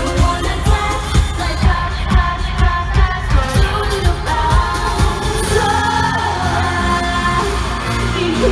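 K-pop girl group singing live over a pop backing track, with a thumping beat about twice a second that gives way to sustained music about halfway through.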